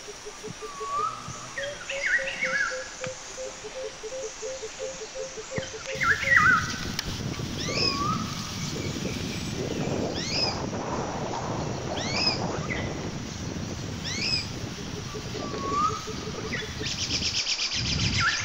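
Wild birds calling, one repeating a short sweeping high call about every second and a half, with other chirps around it. A rapid low pulsing runs for the first few seconds, and a steady rushing noise sets in about six seconds in. A fast high trill comes near the end.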